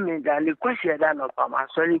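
Speech only: a person talking continuously, with no other sound.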